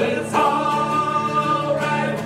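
Live acoustic band: strummed acoustic guitars with several voices holding one long sung note together, coming in about a third of a second in.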